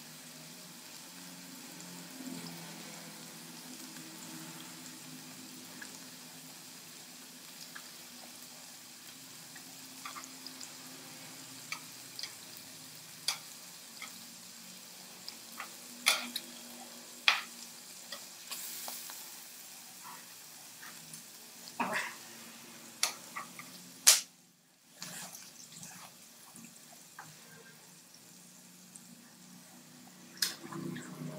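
Food sizzling faintly on a hot griddle pan, a steady low hiss, with scattered sharp clicks and smacks from chopsticks and eating. A loud click about 24 seconds in.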